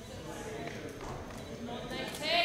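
High heels clicking on the stage floor as competitors shift their feet and poses, under a low murmur of voices.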